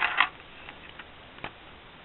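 Clicks and light ticks from a Perplexus Rookie maze ball being tilted: its small ball knocks and rolls against the plastic track inside the clear sphere. There are two sharp clicks at the start, then faint ticks and one more click about one and a half seconds in.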